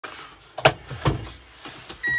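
Two sharp clicks inside a small car's cabin, the first about half a second in and the second a little under half a second later.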